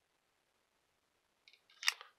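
Near silence, then near the end a single short, sharp click.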